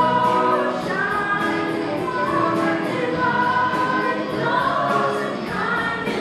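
Stage musical cast singing together in chorus over a musical accompaniment with a steady beat of about four ticks a second.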